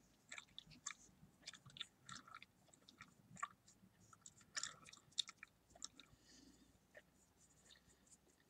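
Close-miked bubble gum chewing: irregular wet smacks and clicks, several a second, with a louder cluster about halfway through.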